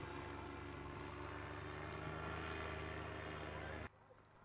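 Steady low mechanical hum of a motor, even in pitch and level, cutting off abruptly just before the end.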